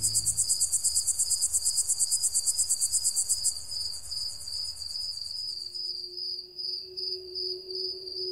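Crickets chirping at night: a fast, high trill that stops about three and a half seconds in, over a slower, steady chirping that goes on throughout. A low held music tone comes in near the end.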